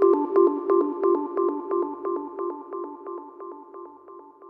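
Closing bars of a progressive trance track: a lone synthesizer repeating a quick note pattern, with no drums, fading out.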